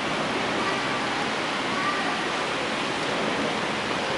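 Steady rushing hiss with faint, indistinct voices beneath it.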